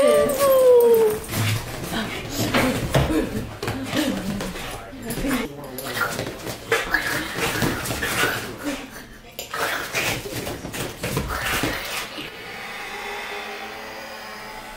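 A dog whining, falling in pitch, for about the first second, then scuffling and rustling as a person plays with it, with a few more short dog noises.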